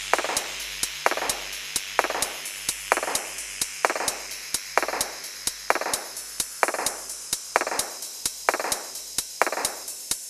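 Background music with a steady beat: a sharp percussive hit a little under once a second, each trailing off in a short hiss, with lighter ticks between the hits.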